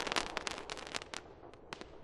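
The dying crackle at the end of a multishot fireworks cake's finale: many sharp little pops, thinning out and fading, with a few last isolated pops near the end.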